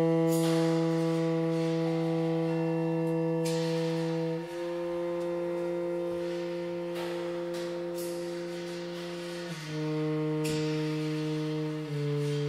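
Tenor saxophone sustaining three long low notes, each held four to five seconds, with the pitch shifting between them. Short bright percussion strokes sound about every three and a half seconds over the held tones.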